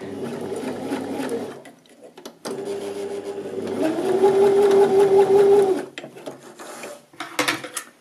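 Janome 725s sewing machine stitching a rolled hem: it runs for about a second and a half, pauses briefly, then runs again for about three seconds, getting faster and louder partway through, before stopping. A few sharp clicks come near the end.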